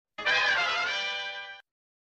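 Short musical logo sting: one held, ringing musical sound that comes in just after the start and fades away within about a second and a half.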